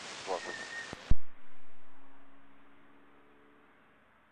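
Air traffic control radio: a hissing transmission with a brief snatch of speech and a short steady beep, ending about a second in with a loud click as the transmission cuts off. A faint hum then fades away.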